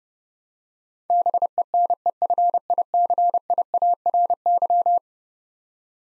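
Morse code sent at 30 words per minute as a single steady tone keyed in short and long elements, spelling out the word "beneficiary"; it starts about a second in and stops about a second before the end.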